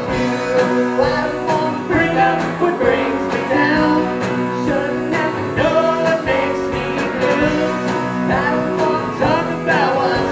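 A live band playing a country-rock song: electric guitars, bass and a drum kit keeping a steady beat, with a man singing lead.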